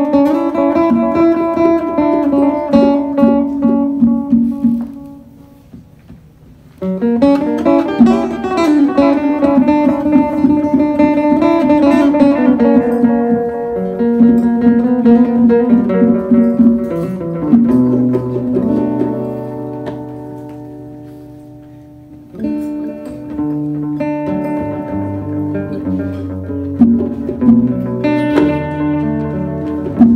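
Acoustic guitar playing picked notes and chords in a live acoustic set. The music drops away about five seconds in and comes back suddenly a couple of seconds later, then fades again before returning abruptly.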